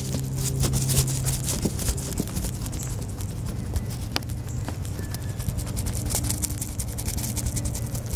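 A crayon scratching on coloring-book paper in rapid back-and-forth strokes, over a steady low hum.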